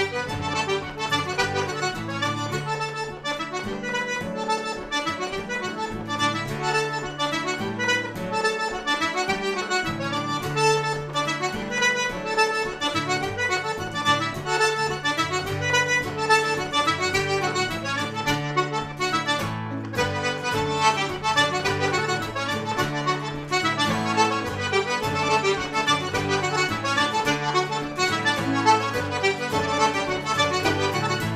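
Quebec traditional tune played on a diatonic button accordion, with acoustic guitar strumming chords and a fiddle, at a steady rhythm.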